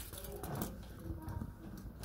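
Faint handling noise: a tape measure being shifted and laid across a leather chair back, with soft rustles and light clicks, under a low murmur.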